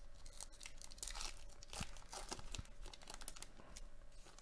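A 2022 Topps Heritage baseball card pack's wrapper being torn open by hand and crinkled, a quick run of ripping and crackling that is busiest in the middle.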